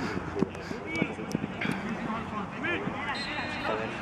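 Voices of footballers calling out across the pitch during play, with a few short sharp knocks among them.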